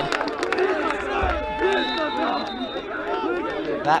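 Stadium crowd and sideline voices at a college football game, many people talking and calling out at once.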